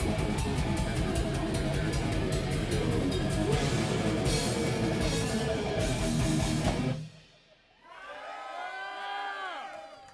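Live rock band, with distorted electric guitars and a drum kit, playing loudly and stopping abruptly about seven seconds in, which ends the song. After a moment's hush the crowd whoops and cheers.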